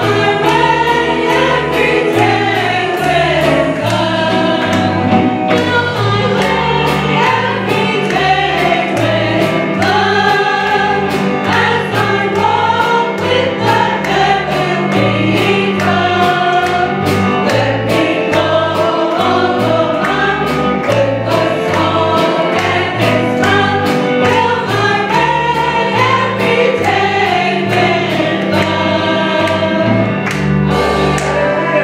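A small group of women singing a gospel song together into microphones, with a bass line and a steady beat accompanying them.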